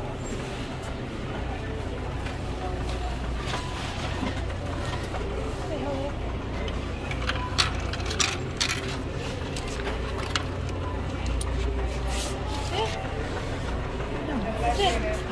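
Self-checkout area ambience: a steady low hum with faint distant voices, and a few sharp clicks and clatters about halfway through and again near the end.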